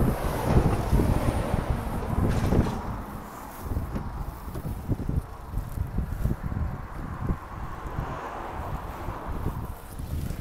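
Wind buffeting a phone microphone: an uneven, gusty rumble, strongest in the first few seconds and easing after about three seconds.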